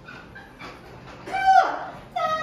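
Light clicks of a small dog's claws on a wooden floor as it goes onto a mat, then, a little past halfway, a short high-pitched call that falls in pitch at its end.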